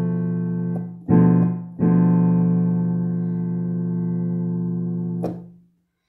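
Digital piano sounding a B half-diminished (Bm7b5) chord: held and fading, let go about a second in, struck again briefly, then struck a third time and held for about three and a half seconds. It ends with a click and dies away.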